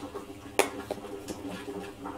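Plastic lid being pressed down onto a plastic freezer container: one sharp click about half a second in, then a few fainter ticks as it is seated.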